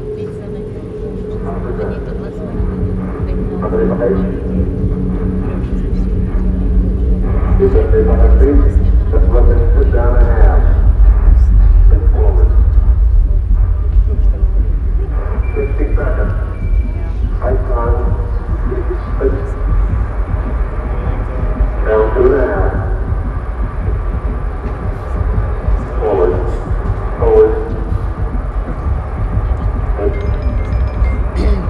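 Soundtrack of an Apollo 11 Saturn V launch played over loudspeakers: a deep rocket rumble that builds over the first several seconds and stays loud, with voices heard over it.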